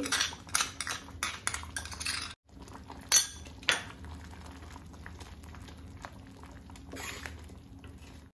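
Metal spoon clinking and scraping against a glass bowl and a steel pan as soaked masala is emptied into thick dal, then a steel ladle knocking and stirring in the pan. The clinks come thick and fast in the first two seconds, with a couple of sharp knocks a second or so later and softer stirring after that.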